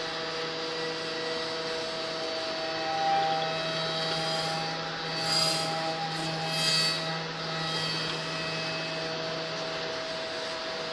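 Five-axis CNC machining center milling a blue block: a steady hum with several whining tones from the spindle and drives. Louder swells of cutting noise come about three, five and a half, and seven seconds in.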